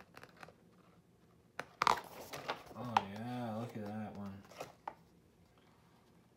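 A stiff book page is turned with a sharp papery rustle about two seconds in. It is followed by a man's drawn-out wordless voice sound, about a second and a half long, wavering in pitch.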